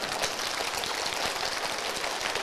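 Audience applauding: the dense clapping of many hands.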